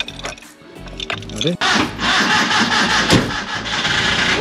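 1983 Maruti 800's petrol engine being started cold on the choke, catching about a second and a half in and then running loudly.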